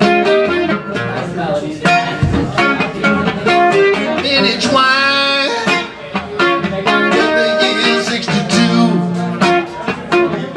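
Solo acoustic guitar playing a bluesy passage of picked notes and chords. About halfway through, a long wavering note is held for about a second.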